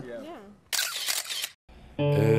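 A voice trailing off, then a short burst of hissing noise lasting under a second, broken off by a moment of dead silence at an edit.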